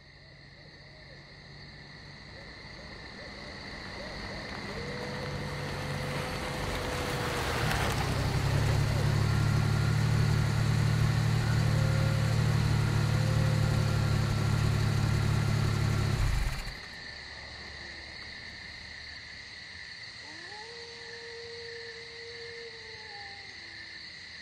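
A sound-effects intro of a night: steady, high insect chirring throughout. A low rumble fades in, swells over several seconds and cuts off abruptly about two-thirds of the way through. A few long, wavering gliding tones come and go over it.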